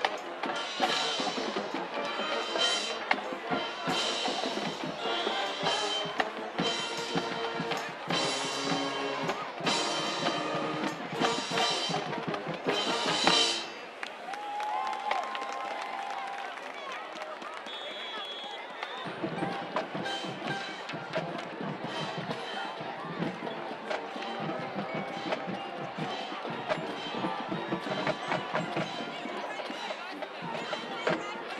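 High school marching band playing a drum-heavy tune with horns, cutting off abruptly about halfway through; after that, a crowd murmurs and calls out.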